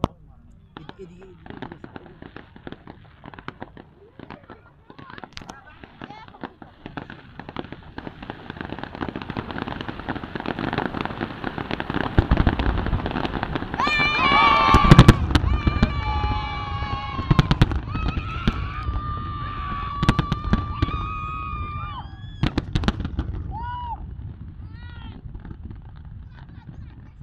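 A fireworks display: scattered bangs and crackles build to a dense, loud barrage about halfway through, then thin out again. Through the loudest stretch, high-pitched voices call out over the bursts.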